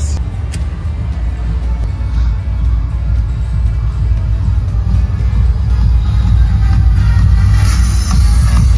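Music with a heavy, steady bass, getting gradually louder.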